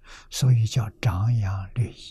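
Speech only: a man lecturing in Mandarin Chinese.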